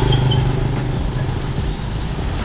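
Street traffic, with a nearby vehicle engine humming steadily and fading about halfway through.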